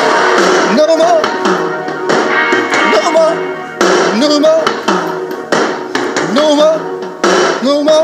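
Karaoke backing track playing the song's closing bars, with loud, regular drum hits and pitched parts that slide up and down.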